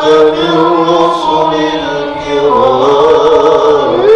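A group of men chant a Maulid ode together in maqam Rast, with a violin playing along. The melody wavers without a break and dips about two and a half seconds in.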